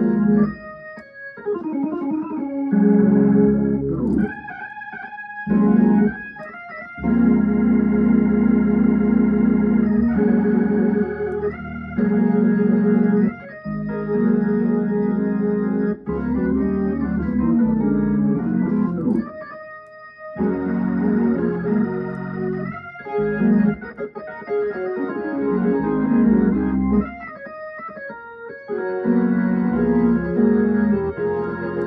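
Hammond organ playing a hymn in slow, held chords, phrase by phrase, with short breaks between phrases; the longest break comes about two-thirds of the way through.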